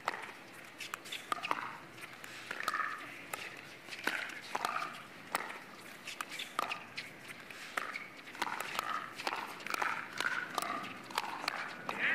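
A pickleball rally at the net: irregular, repeated sharp pops of paddles striking a plastic ball, many in quick succession, with players' footwork on the hard court.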